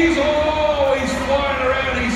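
A man speaking indistinctly, with no clear words, like a race commentator heard over a stadium public-address system.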